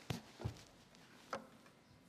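A hushed pause broken by a few soft, irregular footsteps and thuds on a stage floor.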